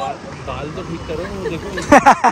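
Women's voices talking and laughing, with a loud burst of laughter near the end, over a low hum of street traffic.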